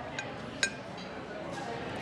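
A metal spoon clinks twice against a dish while a bite is scooped up, the second clink sharper with a brief ring, over a low murmur of restaurant background noise.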